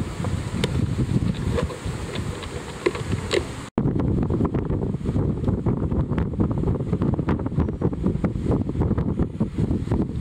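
Wind buffeting the microphone: a steady low rumble, broken by a brief dropout about four seconds in.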